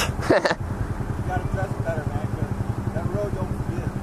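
Honda Ruckus 49cc four-stroke single-cylinder scooter engine running steadily with an even, rapid putter, after a short laugh at the start.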